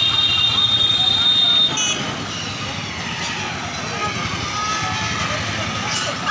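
Busy street noise with traffic and background voices. A steady high-pitched whine sounds over it for the first two seconds or so, then cuts off.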